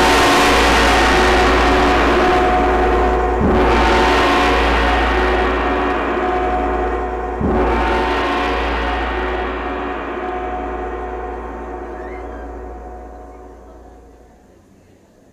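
A gong ringing from a strike, then struck twice more about four seconds apart, each stroke leaving a long, shimmering ring of many steady tones that fades away slowly near the end.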